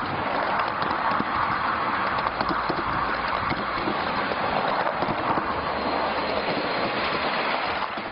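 A miniature railway train running along the track, its bogie wheels rolling on the rails with a steady rushing noise and faint scattered clicks.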